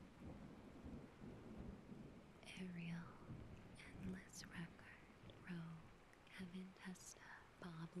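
A low rumble, then a soft, hushed voice speaking from about two and a half seconds in.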